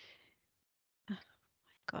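Brief, quiet speech, "Oh my", about a second in, with near silence around it.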